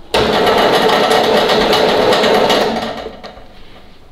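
Workshop vehicle lift's electric motor running steadily, starting suddenly and cutting out after about two and a half seconds.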